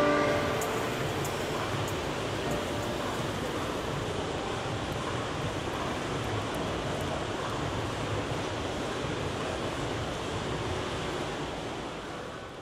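Steady, even background noise of a large airport terminal hall, with no distinct events; the last notes of a music track end right at the start.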